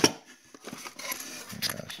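Hands handling cardboard ammunition boxes: a loud brushing knock at the start as a hand passes close to the microphone, then light rustling and small clicks.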